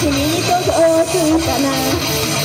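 Female voice singing a Japanese pop-rock song live through a PA system over loud rock backing music, holding sustained notes with small pitch slides.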